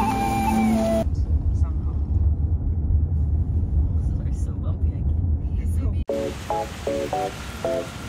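Low, steady rumble of road and engine noise inside a moving car's cabin. It is preceded by about a second of flute-like music and cut off suddenly a few seconds later by a voice speaking.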